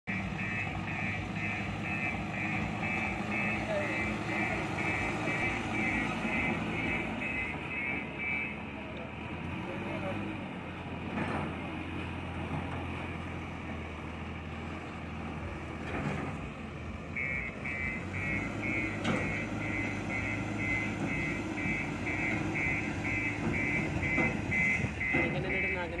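Diesel engines of JCB backhoe loaders and a telehandler running, with a reversing alarm beeping about twice a second. The beeping stops after about eight seconds and starts again about seventeen seconds in.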